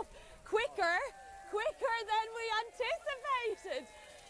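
Speech only: voices talking and exclaiming, with no other sound standing out.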